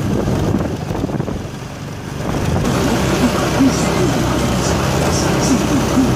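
A vehicle engine running at low revs under busy street-traffic noise, with a brief dip in loudness about two seconds in and indistinct voices after it.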